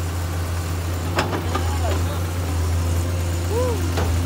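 Heavy diesel engine idling steadily with a low hum, with a couple of sharp clicks just over a second in.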